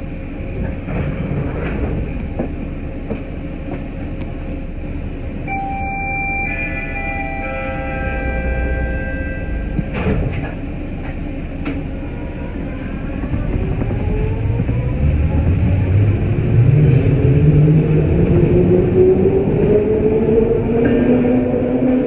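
Detroit People Mover car with its linear induction motor, standing with a steady hum. About six seconds in comes a chime of a few held tones, and near ten seconds a knock, as the doors close. From about thirteen seconds a rising whine climbs and grows louder as the car pulls away and gathers speed.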